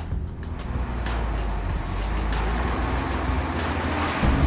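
Low rumble of a coach's engine and road noise heard from inside the cabin, growing gradually louder.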